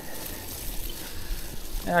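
Bicycle tyres rolling over a wet, muddy grass track, with a steady low wind rumble on the action camera's built-in microphones, which have no windscreen.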